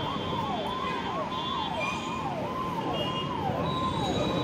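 An electronic siren sweeping its pitch up and down in a fast repeating cycle, about twice a second, over a steady background hiss.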